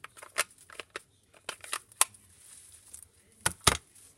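Plastic ink pad cases being handled on a craft table: scattered light clicks and taps, with two sharper clicks about three and a half seconds in.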